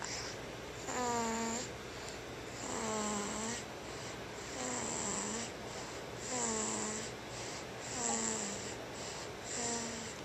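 Infant drinking from a baby bottle, making soft pitched grunts with its breathing, about six in a row, one every second and a half or so, each dipping slightly in pitch and carrying a breathy hiss.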